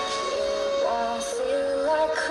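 Female pop vocalists singing a Christmas song with instrumental backing, holding long notes that slide between pitches.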